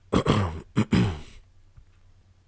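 A person coughing: a quick run of three or four coughs within about a second, louder than the reading voice around it.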